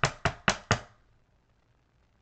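A thin metal paper-cutting die being flicked to knock loose a cardstock piece stuck in it: four sharp clicks about four a second, stopping about a second in.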